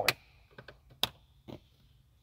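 Hinged plastic flip covers on a Ford F-150's rear-console power outlets and USB ports being snapped shut by hand: a sharp click just after the start, another about a second in, and a fainter one around a second and a half.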